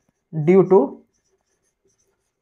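A man's voice speaks two words, then stops about a second in. A felt-tip marker writes on a whiteboard throughout, so faint it barely shows.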